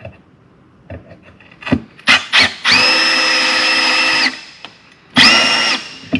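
Cordless drill/driver running with a steady whine, first for about a second and a half and then in a short second burst, tightening a fastener into a trolling motor's mounting plate; a few light knocks come before it.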